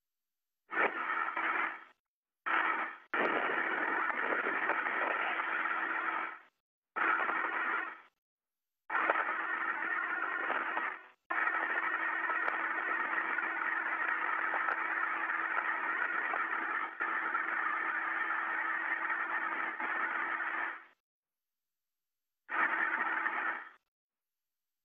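Radio communications loop hiss with a steady low hum, keyed open and shut about five times with dead silence between, the longest opening lasting about twelve seconds, and nobody speaking on it.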